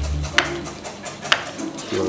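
A metal spoon stirring a caramel mixture in a frying pan, clinking sharply against the pan twice.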